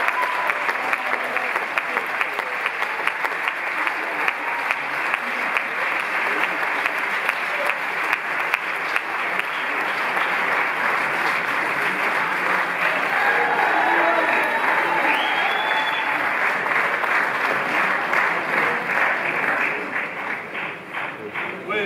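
Audience applauding: many hands clapping in a dense, steady sound.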